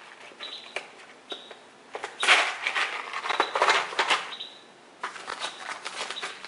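A hard plastic storage case clacks a few times as it is set down in a tool-chest drawer. Then plastic bags crinkle and rustle as they are handled, in a long spell and again near the end.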